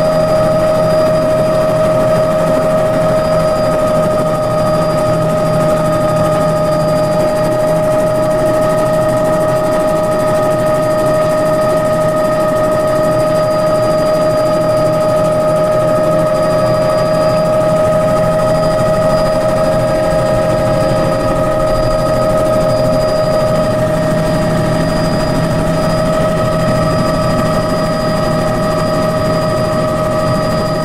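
Helicopter heard from inside the cockpit as it lifts off and climbs away: a steady high whine over constant rotor and engine noise, loud and unchanging.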